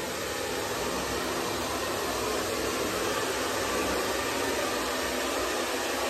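Handheld electric hair dryer running, a steady blowing of air and motor noise.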